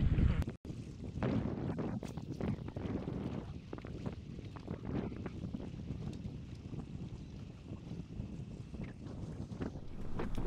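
Wind rushing over the microphone on a small fishing boat: a steady low rush with scattered faint knocks, cutting out for an instant near the start.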